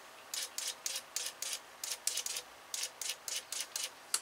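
A rebuilt Toyota 22RE fuel injector, pulsed off a battery, firing a quick series of short hissing spurts of cleaning fluid into a cup, about fifteen in all and coming faster toward the end. It sprays cleanly, the sign of a good injector after cleaning.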